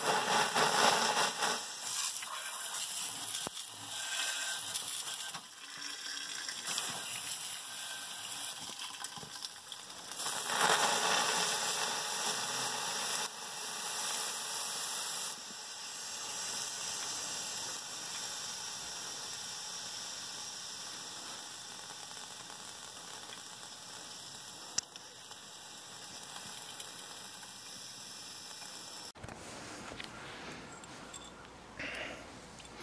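A steady hissing spray, loudest in the first couple of seconds and again from about ten to fifteen seconds in, then easing off and stopping abruptly near the end.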